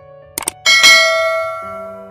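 A quick double click, then a bright bell chime that rings and fades over about a second: the sound effect of a subscribe-button click and notification-bell animation, over soft background music.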